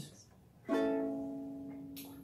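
A ukulele chord strummed once, about two-thirds of a second in, then left ringing and slowly fading.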